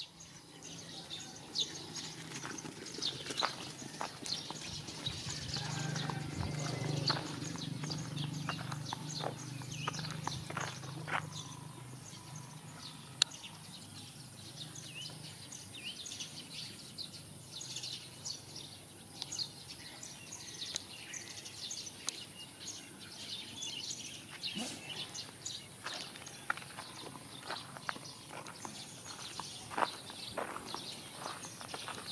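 Outdoor ambience on a dirt road with many scattered faint clicks and ticks. A low hum swells about six seconds in and fades away by about twelve seconds.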